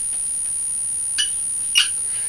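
Dry-erase marker writing on a whiteboard: two short strokes about a second in and near the end, over a steady high-pitched whine.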